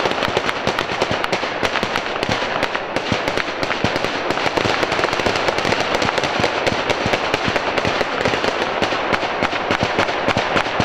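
Sustained, rapid gunfire from several guns: an exchange of fire between police and a barricaded suspect, many shots a second overlapping and echoing with no pause.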